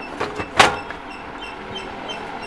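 A single sharp plastic click about half a second in, as a blister-packed plastic toy set is handled and hung back on a shelf, over low background noise.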